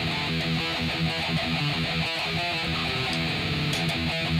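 GrassRoots Explorer GMX-48 electric guitar playing a metal riff: a quick, unbroken run of picked notes at a steady loudness.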